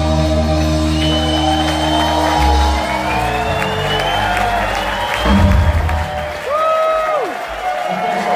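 A live rock band ending a song: a held low chord rings and stops about two and a half seconds in, and one last low hit comes just after five seconds. The crowd cheers and whoops over it.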